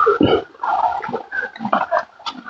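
Animal calls: a quick, irregular series of short sounds.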